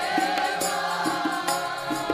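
Sikh kirtan: women's voices singing a Gurbani hymn together over sustained harmonium chords, with tabla strokes keeping the rhythm.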